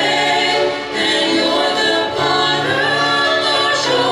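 Three women singing a gospel worship song together in harmony into handheld microphones, holding long notes.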